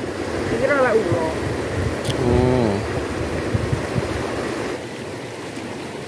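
Shallow stream rushing steadily over rocks, with a person's voice making two short sounds in the first half.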